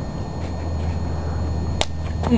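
A steady low rumble, with one sharp click near the end.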